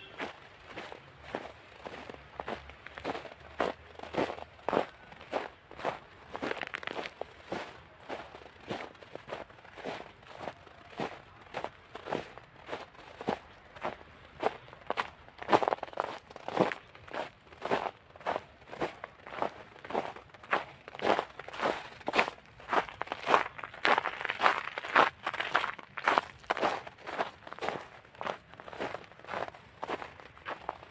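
Footsteps on a snow-covered path at a steady walking pace, about two steps a second.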